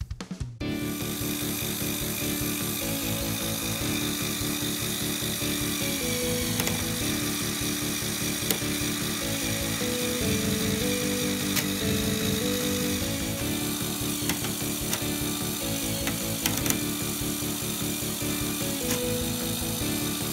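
Lego Technic three-speed automatic transmission running under motor power: its plastic gears give a steady whirring clatter. Background music with held notes that change step by step plays over it.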